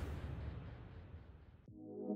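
Logo sound effect: the tail of a whoosh dies away into near silence, then electronic intro music with a low sustained chord comes in near the end.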